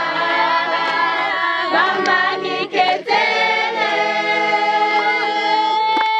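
A group of girls singing a cappella in several voices, holding long notes, with a few hand claps.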